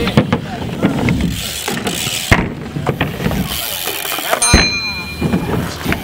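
A BMX bike riding on skatepark ramps, with rolling tyre rumble and noise from the moving camera. Scattered knocks come from the bike, the loudest about four and a half seconds in, followed by a brief high ringing squeal.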